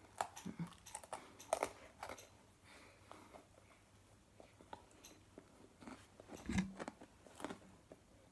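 Crisp pretzel sticks being bitten and chewed several at a time: irregular dry crunches, thickest in the first couple of seconds and again near the end. A louder dull bump comes about six and a half seconds in.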